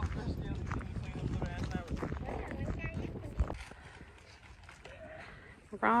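Faint voices of several people talking in the background over a low outdoor rumble, dropping to a quieter stretch after about three and a half seconds; a man starts speaking close by at the very end.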